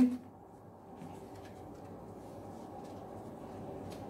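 Faint light taps and rustles of a card sewing pattern being laid on fabric and smoothed flat by hand, over a low steady room hum.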